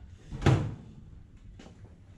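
A single loud clunk from a countertop microwave oven being handled, about half a second in.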